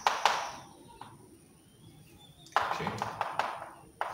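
Chalk tapping and scratching on a chalkboard as points are marked on a graph: a sharp tap just after the start, then a quick run of clicks and scrapes about two and a half seconds in.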